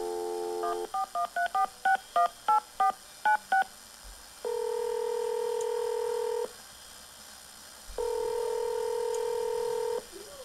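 Telephone call sounds played through a radio's speaker: a brief dial tone, about ten touch-tone (DTMF) key beeps as a number is dialled, then two long ringback tones with a pause between them as the line rings.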